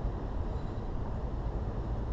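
Uneven low rumble of wind buffeting the microphone of a camera left out in an open field. A faint, short high chirp comes just under a second in.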